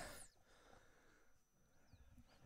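Near silence: faint outdoor background, with the tail of a man's voice dying away at the very start.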